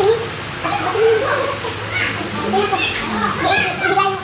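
Several voices chattering over one another around a dining table, with a steady low hum underneath.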